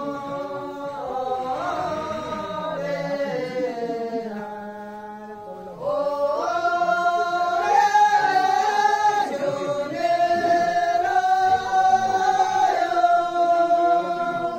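A group of voices singing a chant-like song in long held notes that step from pitch to pitch. The singing grows louder about six seconds in.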